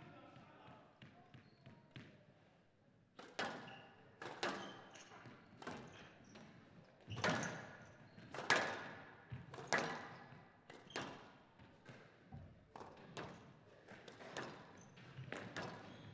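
Squash rally: the ball is struck by rackets and hits the walls of a glass court about once a second, each hit ringing briefly in the hall. The hits start about three seconds in, after a few quiet ball bounces.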